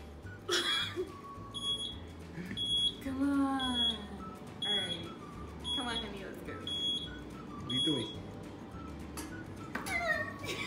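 Electric mobility scooter's reversing beeper giving a short, high beep about once a second, stopping near the end: the scooter is being backed up.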